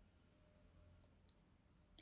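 Near silence: faint room tone, with one short, faint click about a second and a quarter in.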